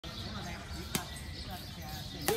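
A badminton racket strikes a shuttlecock once, a sharp single hit about a second in, over faint background voices.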